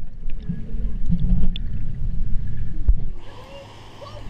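Muffled underwater rumble of pool water moving against an action camera's housing, with small scattered clicks. In the last second it drops quieter and thinner as the camera reaches the water's surface.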